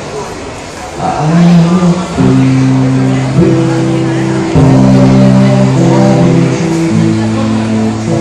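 Electric guitar played through a small amplifier. It starts about a second in with loud, held low notes and chords that change every second or two.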